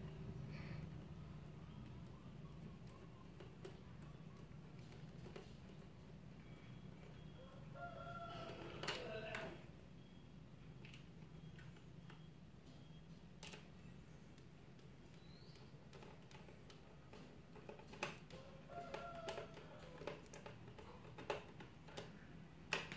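Faint clicks and scrapes of a screwdriver turning screws into a plastic toner cartridge, over a low steady hum. A rooster crows twice in the background, about eight seconds in and again some ten seconds later.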